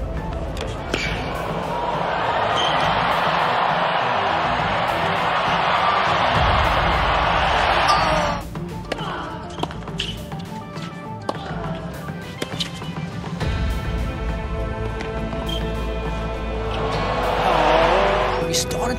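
Tennis ball struck by rackets in a rally, followed by a stadium crowd cheering and applauding for several seconds. Later come sharp ball hits and bounces, with background music coming in near the end.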